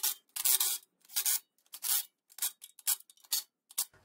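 A cordless impact wrench run in about eight short bursts, spaced roughly half a second apart, as it runs down and snugs the windage tray bolts on an engine block.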